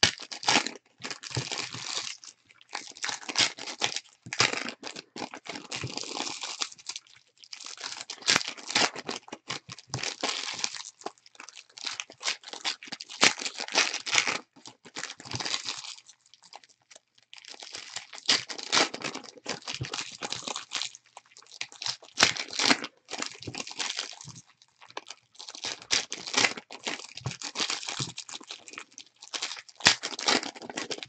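Foil wrappers of Panini Euro 2016 Prizm soccer card packs being torn open and crumpled by hand, crinkling in bursts with short pauses between.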